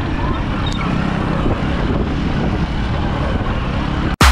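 Road traffic noise from passing cars and motorcycles: a steady rumbling noise, strongest in the low end.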